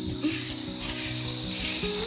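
Stick broom of bundled coconut-leaf midribs (walis tingting) sweeping bare dirt and dry leaves in scratchy strokes, over soft held background tones.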